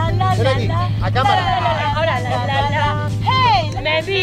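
Several people shouting and cheering excitedly, with one long rising-and-falling call near the end, over the steady low hum of an engine running.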